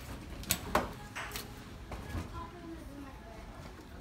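Two sharp clacks close together about half a second in, from luggage and a door being handled at a doorway, with faint voices behind.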